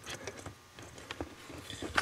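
Faint handling noises of wires and plastic connectors being moved about: a few scattered small clicks and ticks.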